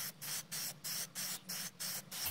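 Aerosol can of Rust-Oleum Glow in the Dark MAX 2x spray paint spraying in quick short bursts of hiss, about five a second, laying down a thin, even coat.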